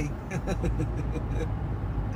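A man laughing in a run of short chuckles that die away after about a second and a half, over the steady low road and engine rumble inside a moving car.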